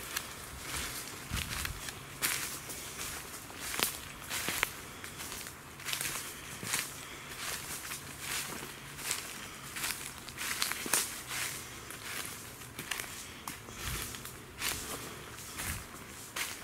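Footsteps crunching through dry leaf litter at a steady walking pace, a step a little more often than once a second.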